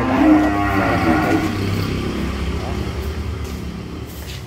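A cow mooing: one long call of about two seconds, loudest at first and then tailing off.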